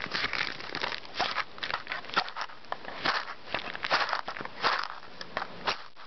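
Irregular rustling and crackling with sharp clicks scattered throughout, the sound of things being handled close to the microphone.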